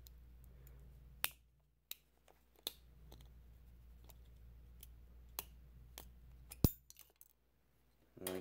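Faint scattered clicks and a few sharper plastic snaps as a double-bladed disposable razor is pried apart with nail clippers to pop the blades loose. The sharpest snap comes about two-thirds of the way through.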